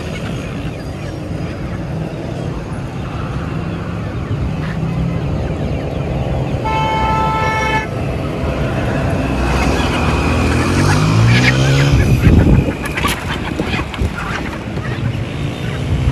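Road traffic close by: a steady engine rumble that slowly grows louder, a vehicle horn tooting once for about a second about seven seconds in, and an engine passing loudly near the end.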